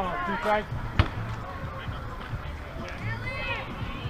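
Voices calling out across a softball field between pitches, with one sharp knock about a second in.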